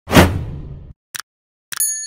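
Edited sound effects for a subscribe-button animation. A loud whoosh with a low boom fades away over most of a second, then comes a single short click. Near the end, a couple of quick clicks are followed by a brief high chime.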